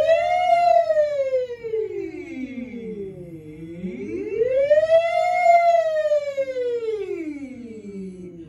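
A woman singing a vocal siren on 'wee', her voice gliding smoothly up to a high note and back down, twice. The second glide fades away at the bottom instead of closing firmly, which the teacher calls dying out of the phrase.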